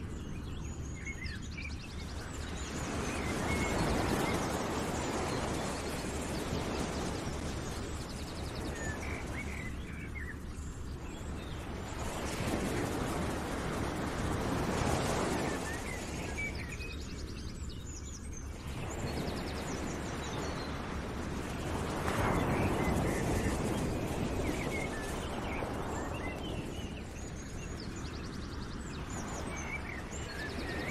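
Nature ambience: rushing waves that swell and fade every several seconds, with short bird chirps scattered on top.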